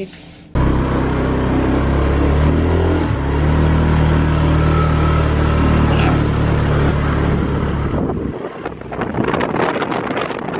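125 cc moped engine running under way, with wind on the microphone; the engine note steps up in pitch about three seconds in, holds steady, then eases off near the end.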